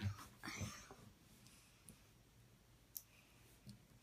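Small plastic Lego pieces being handled and pressed together on a wooden table: a soft knock at the start, a short breathy sound, then a few faint, sharp clicks.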